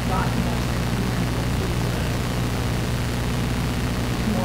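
A steady low hum runs throughout, with faint distant speech just at the start.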